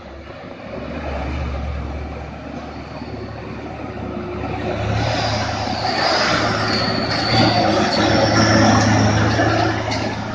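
Heavily loaded Hino 500 Ranger six-wheel truck's diesel engine pulling uphill through a tight hairpin, growing louder as it draws near and passes. A steady low drone steps up in pitch about halfway through.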